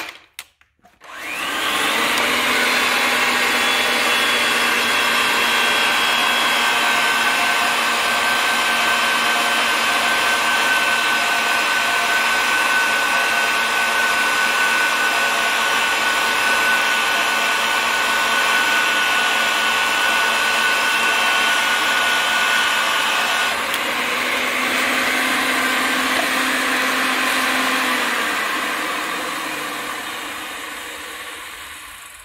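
Ridgid 300 pipe threading machine's motor starting about a second in and running steadily while the die head cuts threads on a three-quarter-inch steel pipe. The tone changes about 23 seconds in, and near the end the machine winds down with a falling pitch.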